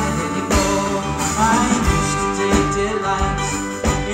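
Live folk-rock band playing an instrumental passage: plucked mandolin over electric bass guitar and drums, with a steady beat.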